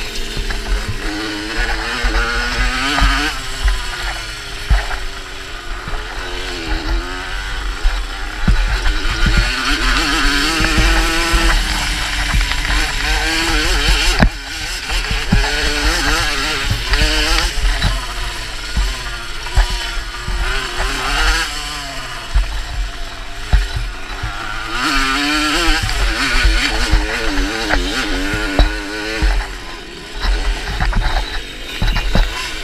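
Small two-stroke moped (Mofa) engine ridden hard on a dirt track, revving up and down over and over as the throttle opens and closes, close to the microphone with wind rumbling on it. There are short knocks from bumps throughout, and a brief drop near the middle.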